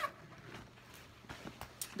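Faint handling sounds from a fabric diaper bag being opened: a few light clicks and rustles, mostly in the second half.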